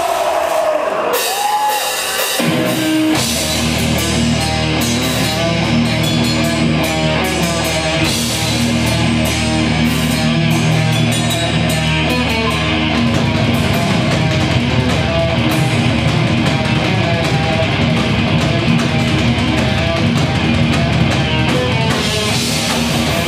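Live heavy metal band playing: cymbals and drums come in about a second in, then distorted guitars and bass join about two and a half seconds in and play on loud and dense.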